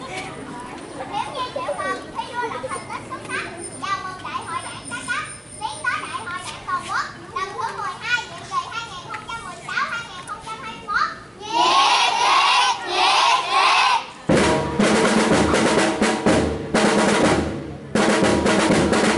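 Children's voices talking and calling out, then a loud burst of many children's voices together, in two parts, about twelve seconds in. Snare drums then start up suddenly about fourteen seconds in and play a rapid, continuous roll.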